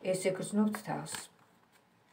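A woman speaking, stopping a little over a second in. After that comes faint handling of a deck of tarot cards, with a few light clicks.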